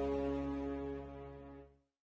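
The song's instrumental backing track ending on a held final chord with a deep bass note, fading down and then cutting off just before two seconds in.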